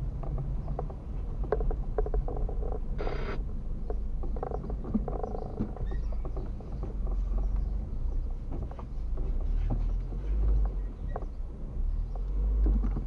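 A car creeping slowly, heard from inside the cabin: a low engine and road rumble with scattered small clicks and rattles, and a short hiss-like burst about three seconds in.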